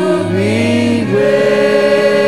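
Amplified gospel choir with a lead singer on microphone, singing long held notes; the voices settle into one sustained chord about a second in.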